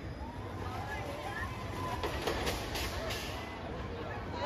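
Woodstock Express junior roller coaster train rolling along its steel track, with a steady rumble and a burst of clattering about two to three seconds in as it nears. Distant voices of riders and guests are heard underneath.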